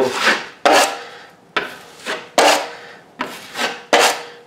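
Metal putty knife scraping 20-minute setting-type joint compound (hot mud) across a drywall patch in about six strokes, each starting sharply and tailing off.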